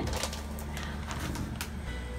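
A crinkly plastic bag of cotton candy rustling as it is picked up and handled, over a low steady hum.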